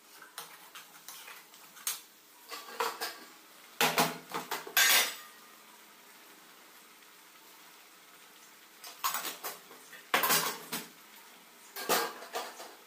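Stainless-steel kitchenware clinking and scraping: a steel ladle stirring and knocking in a steel kadai, and a steel spice box and its lid being handled. It comes in several short spells of clatter, loudest about four to five seconds in, with a few quiet seconds midway.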